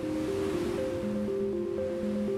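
Background music, a steady melodic pattern of short held notes, over the rushing hiss of sea waves.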